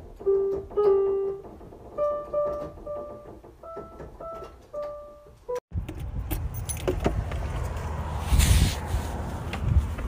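Single notes picked out slowly on an electronic keyboard, a simple stepwise tune. After a cut about six seconds in, a door's knob and lock rattle against steady outdoor background noise.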